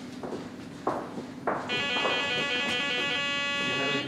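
A couple of soft knocks, then about one and a half seconds in an electronic warning buzzer sounds at the MRI scanner room doorway. It holds one steady tone with a rapid flutter in its upper part.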